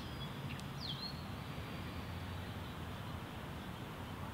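Outdoor park ambience: a steady low background noise, with a couple of short, high bird chirps in the first second, one a quick downward glide.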